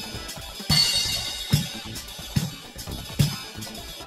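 A recorded drum-kit track playing back from Audacity: bass-drum hits a little under a second apart, with cymbals and hi-hat over them.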